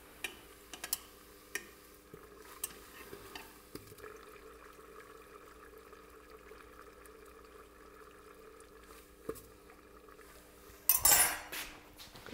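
Light, sparse clicks of tweezers tapping a tennis ball frozen in liquid nitrogen inside a dewar, the ball sounding hard now that the cold has taken its elasticity. A brief louder rustle comes near the end.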